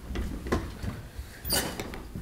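Rustling and light knocks from a paper-wrapped flower bouquet being handled at a desk microphone, with one louder crinkling rustle about one and a half seconds in.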